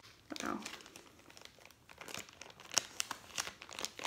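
A mailing envelope crinkling and rustling as it is handled and opened, with irregular crackles and a few sharper snaps of the packaging, as the medal and its ribbon are drawn out.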